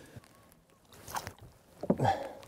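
Faint, brief water splashes and knocks as a large rainbow trout is handled in the water beside a small boat. A few short sounds come about a second in and again near the end.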